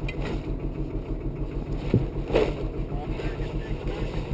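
LMTV military truck's diesel engine running steadily with an even low pulse, with a single short knock about two seconds in.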